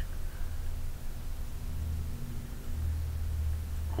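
A steady low hum of background room tone in a pause in the voiceover, growing slightly louder near the end.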